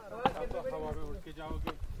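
Background chatter of several people talking at once, with two sharp clicks, one just after the start and one near the end.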